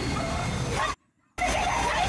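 Film soundtrack of a person whimpering and crying out in pain over a low rumble. The sound cuts to dead silence twice.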